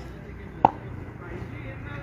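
Faint outdoor background with a single short, sharp knock about two-thirds of a second in.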